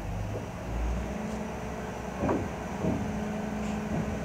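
Diesel shunting locomotive's engine running with a steady low drone while moving a locomotive at walking pace, swelling briefly about a second in.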